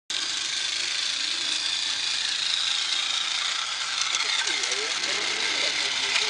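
Small LGB garden-railway locomotive running along its track: a steady high motor-and-gear whine with faint clicks from the wheels on the rails, starting suddenly.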